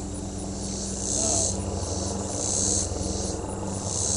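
A chorus of insects buzzing high-pitched in swelling waves about once a second, over the low steady drone of a helicopter flying over.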